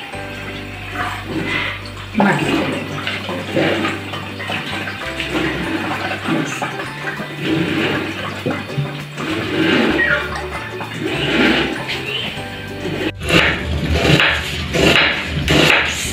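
Hand-ground maize mixed with water poured from a pot through a plastic strainer into a steel cooking pot, splashing and running, then stirred through the strainer with a spoon, over background music.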